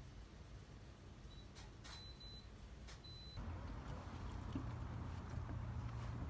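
Faint outdoor ambience: a low rumble with a few light clicks and two brief high tones between about one and three seconds in. About halfway through, a steadier low hum comes in and the sound grows louder.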